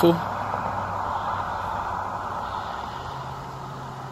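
A car passing on the road, its tyre and engine noise fading steadily as it moves away, over a low steady hum.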